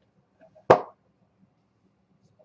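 One sharp clack of a hard card case being handled, about a second in, with two faint clicks just before it.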